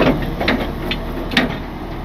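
A few sharp metallic clanks from the wrecker's chain and hitch hardware being moved, about four in two seconds, over a truck engine idling.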